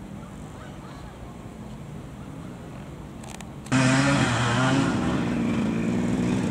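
Vintage off-road motorcycle engine: a low background hum at first, then from about two thirds of the way in the engine runs loud and close at fairly steady revs.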